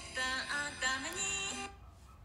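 A song playing: a singing voice over music, stopping short about one and a half seconds in.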